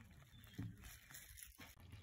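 Near silence: room tone, with one faint brief sound about half a second in.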